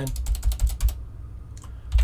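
Fast typing on a computer keyboard: a quick run of keystrokes through the first second, then a few isolated key taps, as a word is typed, deleted and retyped in a text field.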